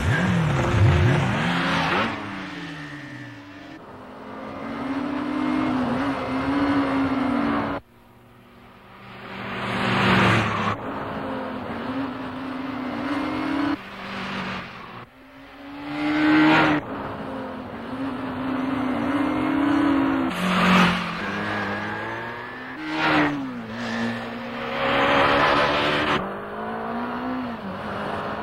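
Two motorcycles racing off from a standing start, their engines revving hard, with the pitch climbing and dropping again and again through the gears. Several louder, rushing surges come in along the way.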